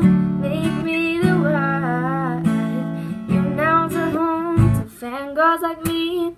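Pop song with acoustic guitar strumming under a woman singing the melody. The guitar drops out briefly just before five seconds in.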